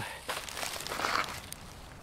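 Faint rustling and crinkling of a plastic tarp being handled, a little busier in the first second.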